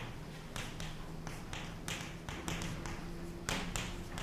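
Chalk tapping and scratching on a chalkboard as words are written by hand: a string of short, irregular taps, about three a second.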